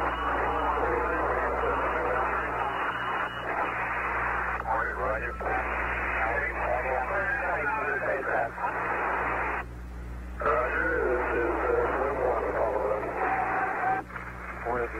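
Mission-control radio loop keyed open, hissing with static and faint garbled voices. It drops out briefly about five seconds in and again for nearly a second around ten seconds in. A steady low electrical hum runs under it.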